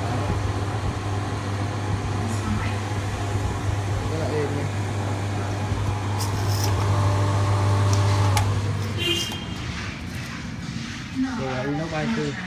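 Stainless-steel 800 W centrifugal spin dryer running, its electric motor giving a steady hum as the drum spins. The hum cuts off suddenly about eight seconds in, and the machine quietens as the drum runs down.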